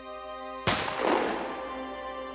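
A single gunshot about two-thirds of a second in, its echo rolling away over about a second, over steady background music.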